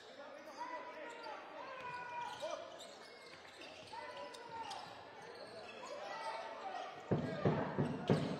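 A basketball bouncing on a hardwood court, with players' shouted calls echoing in a large hall. About seven seconds in, a much louder wash of crowd or arena noise sets in.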